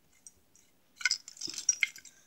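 Small plastic toy pieces clicking and rattling against each other as they are handled. A quick cluster of clicks starts about a second in, with one duller knock in the middle of it.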